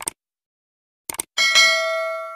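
Subscribe-button animation sound effects: a mouse click at the start and a quick double click about a second in, then a notification-bell ding that rings on and slowly fades.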